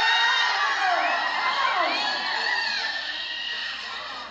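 Spectators, many of them children, cheering and shouting with high voices as a horse and rider run the barrels; loudest at the start, dying down toward the end.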